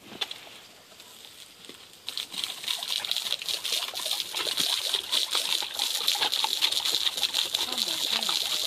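Garden hose spray splattering on a golden retriever's face and open mouth as it bites at the stream, a hissing spatter that grows louder about two seconds in.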